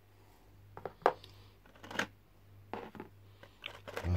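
Small miniature figures being handled: clicks and light knocks as they are picked out of a clear plastic tub and set down on the table, with some rustling of the plastic. There are four or five separate knocks, the loudest about a second in.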